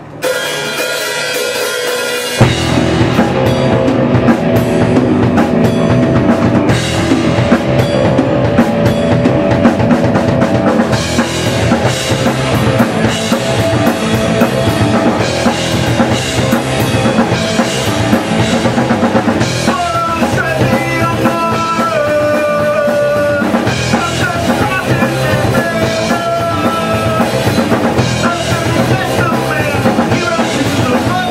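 Live rock band (electric guitar, bass guitar and drum kit) playing the instrumental opening of a song. A short sparser intro gives way to the full band with drums about two seconds in, and a higher melody line enters about twenty seconds in.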